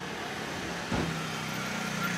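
Motorcycle engine running steadily at low speed as the bike comes close, its low hum growing stronger about a second in, with a short knock near the same moment.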